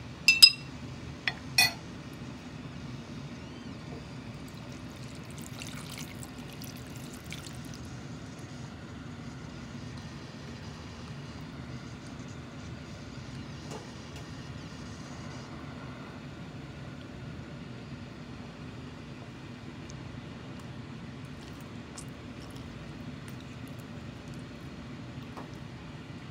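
Two sharp glass clinks near the start, then water poured into a clay pot, over a steady low rush from a gas stove burner.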